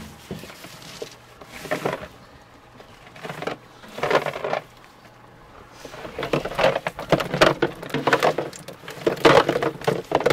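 Live shad being shaken out of a cast net into a plastic cooler: irregular knocking and rattling of the net and fish against the cooler, a few scattered knocks at first, then a busy clatter from about six seconds in.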